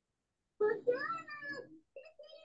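A cat meows once, a drawn-out call of about a second with its pitch rising and then falling.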